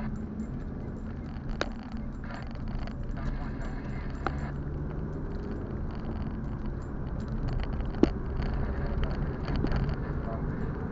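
Car being driven, heard from inside the cabin through a dashcam: a steady low engine hum and road rumble, with a few sharp knocks about a second and a half in, around four seconds in and about eight seconds in.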